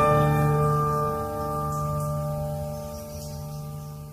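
Acoustic guitar's closing chord ringing out, its notes slowly fading away as the piece ends.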